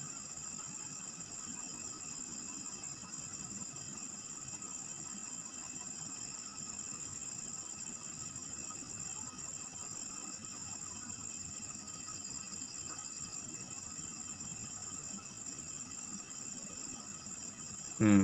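Faint, steady background noise with a constant high-pitched whine running through it, unchanging throughout.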